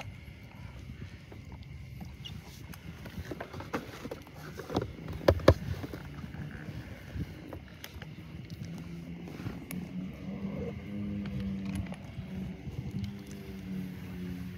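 Small boat being pushed through flooded grass and reeds: rustling and water noise from the hull, with a few sharp knocks on the boat about five seconds in, the loudest sounds here. A low steady hum comes in about halfway through.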